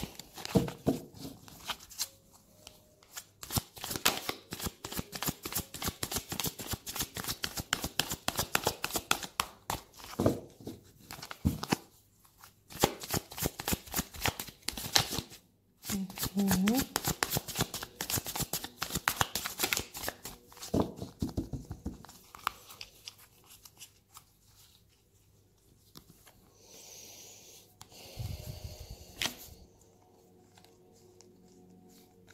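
A tarot deck being shuffled by hand: rapid, dense clicking and rustling of card edges in several bursts with short pauses, dying down about two-thirds of the way through.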